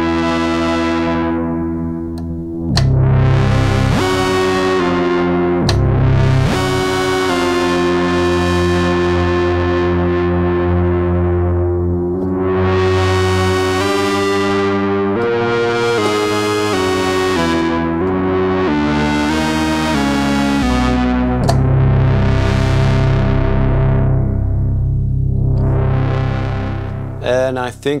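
Eurorack modular synthesizer played through a Klavis Flexshaper waveshaper: a run of sustained, harmonically rich notes. The waveshaping points are modulated, so the tone swells brighter and falls back every two to three seconds.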